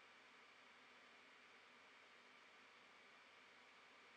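Near silence: only a faint steady hiss of the recording's noise floor.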